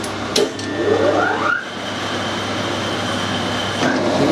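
Metal lathe switched on with a click, its motor and spindle whining up to speed over about a second, then running steadily with a high whine.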